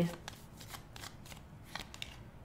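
Tarot deck being shuffled overhand by hand: a soft, irregular run of light card flicks, a few each second.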